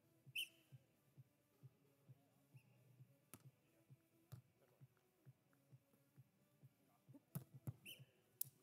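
Near silence: faint court ambience with light ticking about twice a second, a brief high tone about half a second in, and a few faint knocks near the end.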